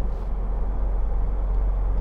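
Steady low drone inside the cabin of a 2009 Jeep Wrangler 2.8 CRD diesel cruising at motorway speed: engine hum mixed with road and wind noise.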